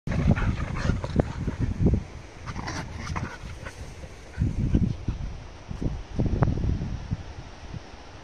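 Two dogs play-fighting, with short growls and yips, loudest and most frequent in the first two seconds, then a few more bursts later on.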